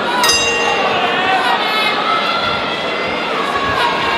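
Boxing ring bell struck once to start the round, its ringing tones dying away over about a second, over a crowd of spectators shouting and chattering.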